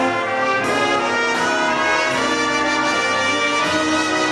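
A high school jazz big band playing, the brass section holding long chords.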